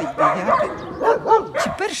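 A dog barking in a quick run of short barks.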